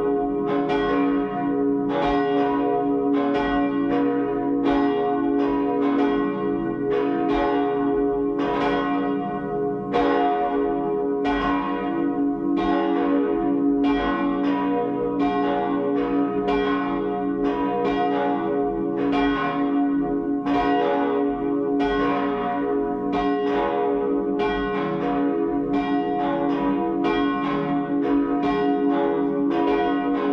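Cathedral church bells ringing before the service: several bells swinging and striking in an uneven, overlapping pattern, a strike about every half second, over a steady ringing hum.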